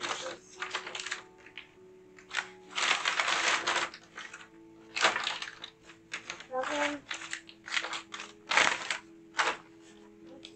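Crumpled brown kraft pattern paper rustling and crackling as hands dig through and lift a pile of it, in irregular bursts, the longest about three seconds in.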